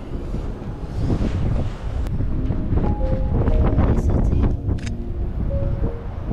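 Wind buffeting the microphone with a steady low rumble. Background music of held notes comes in about halfway through.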